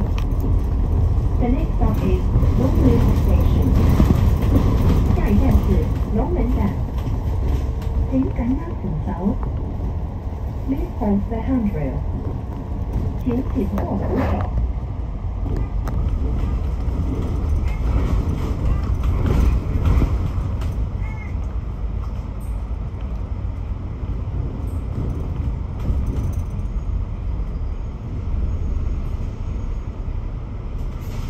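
Steady low rumble of a double-decker bus's engine and tyres heard from inside the moving bus. Indistinct voices run over the first half.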